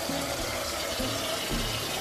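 Water from a kitchen faucet running steadily into a small metal saucepan as it fills.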